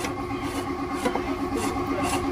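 Electric motor driving a meat-grinder extruder as it presses moist bran feed out through a small-hole pellet die, running with a steady hum of several even tones.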